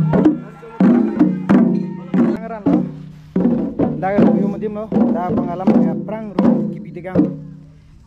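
Traditional music: double-headed barrel drums struck about once a second, under a wavering melodic line and a low steady drone.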